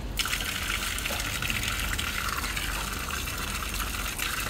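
Water pouring steadily from an outdoor wall tap and splashing, starting suddenly just after the start.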